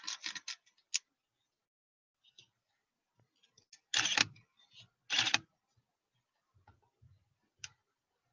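Handling noise from a DSLR camera being moved by hand: a quick run of small clicks, then two louder, brief scuffing bursts about a second apart, and a few faint ticks.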